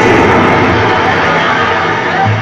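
A loud, steady rushing noise with no clear notes from a live band's keyboard synthesizer, an airplane-like whoosh effect filling a break in the song.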